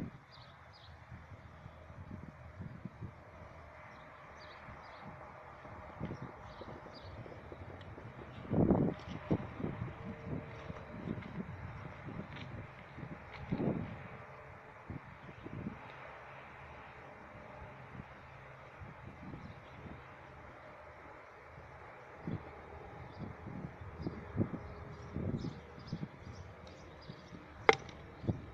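Outdoor ambience with irregular low rumbles of wind on the microphone and short, faint high chirps scattered throughout. A single sharp click comes near the end.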